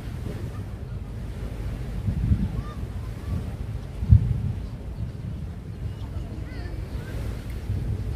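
Wind rumbling on an outdoor microphone by the sea, swelling in a gust about two seconds in, with a short sharp bump just after four seconds.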